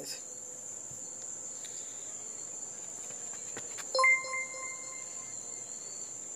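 Crickets trilling steadily as one continuous high-pitched tone. About four seconds in, a short, steady lower tone sounds for a little over a second, louder than the crickets.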